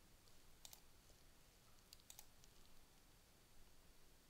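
Near silence: room tone with a handful of faint clicks, a pair about two-thirds of a second in and two more around two seconds in.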